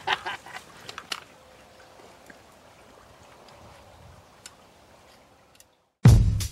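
Quiet outdoor background with a few short clicks and knocks in the first second, fading out just before the end.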